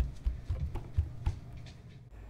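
A string of soft, irregular thumps, several in quick succession, dying away after about a second and a half.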